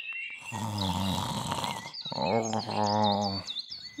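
Two long, low snores from the old owl character, as if asleep. Small bird chirps sound faintly during the second snore.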